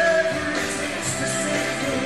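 Rock band playing live: electric guitars, bass and drums, with a long held high note.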